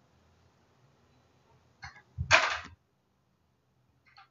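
Handling noise: after a quiet stretch, a faint short scuff just before two seconds in, then a loud half-second thump and scrape.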